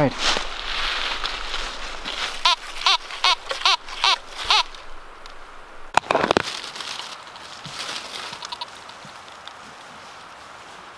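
A small hand digger's blade strikes into leaf-covered forest soil with a sharp click about six seconds in. Soft crackling and scraping of dirt and dry leaves follows as the hole is worked and the soil is picked through by hand. Before that, voices are heard briefly.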